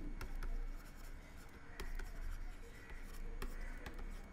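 Faint stylus scratching and tapping on a tablet screen during handwriting, with a few sharp ticks and a low steady hum underneath.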